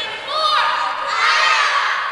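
Several children shouting at once in high-pitched voices, with one cry falling in pitch about half a second in.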